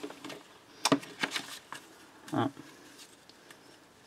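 Light handling noises of hands moving things on a tabletop: a sharp click about a second in, then a few soft taps and rustles.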